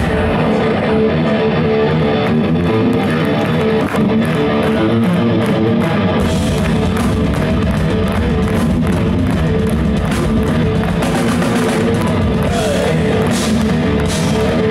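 A heavy metal band playing live: electric guitar, bass guitar and a drum kit. The deepest bass fills in about six seconds in.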